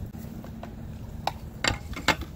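A few short, light clicks of a plastic cap and plastic measuring cup being handled on a herbicide container.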